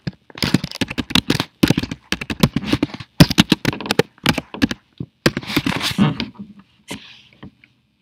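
Typing on a computer keyboard: a fast, uneven run of key clicks for about six seconds that thins to a few last strokes near the end.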